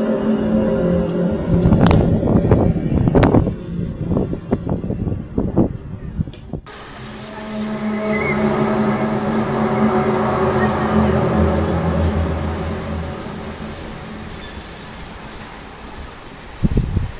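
Low, steady droning with several held tones, of the kind circulated as the mysterious 'trumpet' sounds from the sky, with a few sharp knocks near the start. About six and a half seconds in it cuts to a second recording of a similar low groaning drone that swells and then slowly fades.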